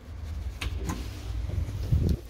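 Traction elevator car travelling with a steady low rumble, a few light clicks about halfway, and a thump near the end as it arrives at the floor.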